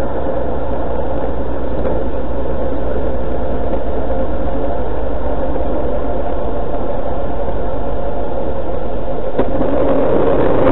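Steady running noise of a small open vehicle driving on a road: a continuous low rumble and hum. There is a brief click about nine seconds in.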